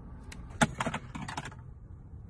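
A quick run of sharp clicks and small knocks over about a second, one louder knock near the start of the run, like small hard objects being handled.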